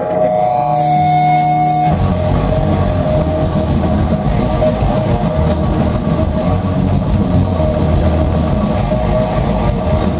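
Death metal band playing live: a held note rings for about two seconds, then the full band comes in with distorted electric guitars, bass and drums.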